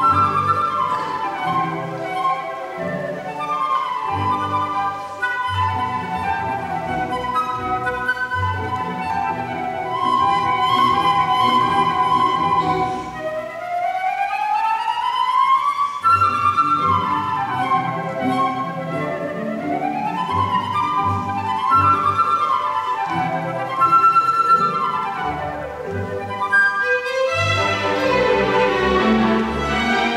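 Concert flute playing a virtuosic solo of fast runs sweeping up and down the scale, accompanied by a string chamber orchestra. Near the end the flute stops and the strings carry on.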